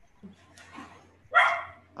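A dog barking once, a short sharp bark about one and a half seconds in, heard over the video-call audio.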